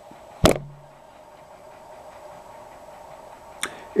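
A pause in a man's talk: a sharp mouth click with a brief low hum of his voice about half a second in, and another lip click just before he speaks again, over a faint steady room hum.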